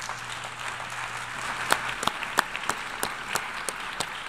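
Audience applauding: a steady patter of clapping, with a few louder single claps standing out from about halfway through.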